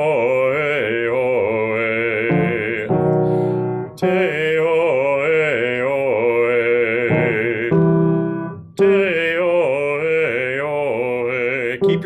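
A man singing a vowel-change warm-up vocalise (te-o-e-o-e) in three phrases, each a half step higher than the last. Short steady keyboard chords sound between the phrases, and the sound is thin and narrow, as through a video call.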